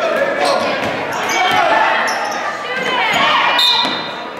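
Basketball bouncing on a hardwood gym floor amid the voices of players and spectators, with a short referee's whistle near the end.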